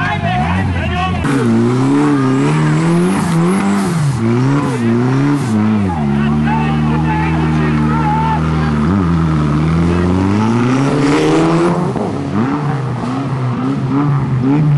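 Rally car engine running and revving up and down under load while the car is pushed out of a ditch, with people shouting over it. The revs rise and fall several times, hold steady for a few seconds in the middle, then climb again.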